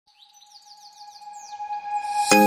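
Birdsong-like chirping, a quick run of falling chirps about seven a second, over a steady held tone. Both fade in and grow louder, the opening of a logo intro jingle.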